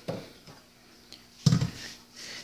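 A short knock, then a louder dull thump about one and a half seconds in: objects being handled on a kitchen counter, with faint ticks between.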